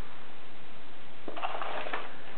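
Faint background hiss, then a short paper rustle near the end as a paper cone is handled and lifted.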